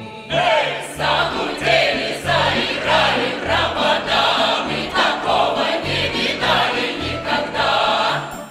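Russian folk choir singing a song in full chorus, women's voices in front, over a folk-instrument orchestra with a pulsing bass line. The chorus stops right at the end, leaving the instruments.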